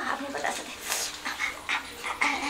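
A woman panting and moaning in short, breathy gasps, in pain from an upset stomach.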